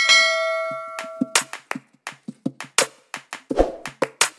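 A bright bell-chime sound effect, the notification bell of a subscribe-button animation, rings and fades over about a second and a half. Then background music with a quick, clicking percussive beat starts.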